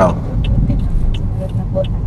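Steady low road and engine rumble heard inside a moving car's cabin, with the turn-signal indicator ticking faintly about every two-thirds of a second.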